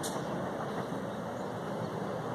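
Steady low rumbling background noise, like outdoor traffic hum, with a short click at the very start.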